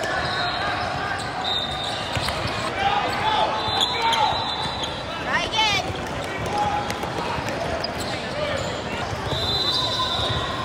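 Basketball game sounds echoing in a large gym: a ball dribbled and bouncing on the court, sneakers squeaking, with a sharp squeak about five and a half seconds in, under the voices of players and spectators.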